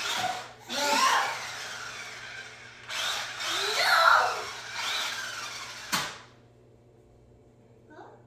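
Electric motor of a remote-control toy monster truck whirring as it drives over a hardwood floor, in two runs with a short break after about three seconds. It stops abruptly with a click about six seconds in.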